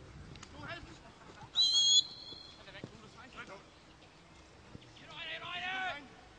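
A referee's whistle blown once, a short shrill blast of about half a second, about one and a half seconds in, stopping play. Players shout across the pitch around it, loudest near the end.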